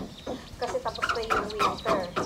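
Domestic fowl calling: a quick run of short, high-pitched calls, each falling in pitch, mostly in the second half.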